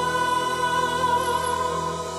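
Female vocal group singing a gospel worship song over band accompaniment, holding one long note.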